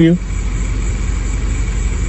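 Car engine idling steadily with a low, even hum.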